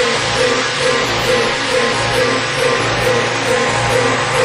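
Electronic dance music from a DJ mix, with a short riff repeating about three to four times a second over a steady beat.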